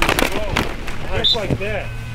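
Youth football players colliding in a hitting drill: sharp thuds of pads and helmets in the first half second, with shouts and cries from the players throughout. A steady low hum comes in about a second and a half in.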